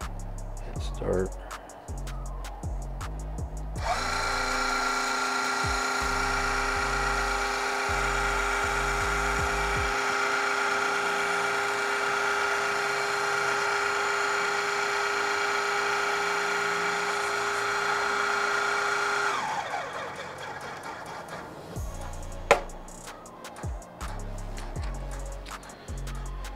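Electric hydraulic pump of a NugSmasher IQ rosin press running at a steady pitch for about fifteen seconds as the press closes and builds pressure on the material. It starts abruptly a few seconds in and cuts off sharply, and a single sharp click follows near the end.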